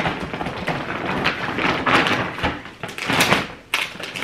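Plastic shopping bag and packaging rustling and crinkling as someone rummages through it, in uneven rustles with a few sharper knocks.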